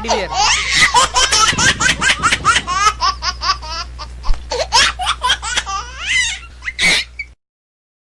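Loud, sustained laughter in quick repeated bursts of several a second over a low steady hum, cutting off suddenly about seven seconds in.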